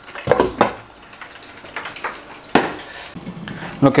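Kitchen handling sounds of a cooking pot and utensils, over a low noisy background, with one sharp knock about two and a half seconds in.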